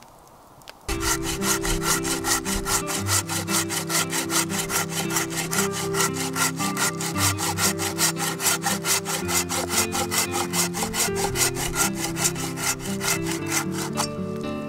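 Hand saw cutting through a log, starting about a second in with fast, even back-and-forth strokes, several a second, that carry on throughout. Background music plays underneath.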